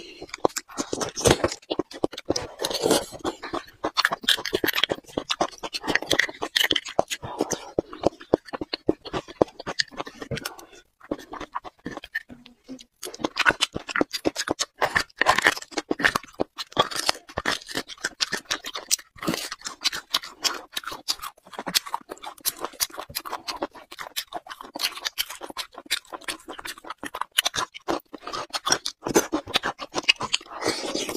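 Close-up eating sounds: a wooden stick scraping and clicking against the inside of a cut bone while marrow is dug out, mixed with wet chewing and mouth smacks. The sounds come in a dense, irregular stream with a short lull around the middle.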